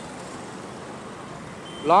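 Steady wind and road noise from riding an electric scooter slowly in city traffic, with no engine note. A man's voice starts just before the end.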